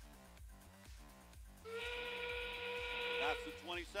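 Arena background music with a steady beat; about a second and a half in, a steady, evenly pitched buzzer tone sounds for about two seconds: the field's warning that 20 seconds remain in the match.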